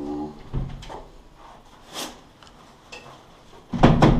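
Entrance door of a building stairwell being worked by hand: a steady buzzing hum cuts off about half a second in, then a dull thud, a sharp latch click, and a heavy thump of the door near the end.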